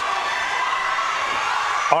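Roller derby crowd and team bench cheering and shouting, a steady wash of many voices.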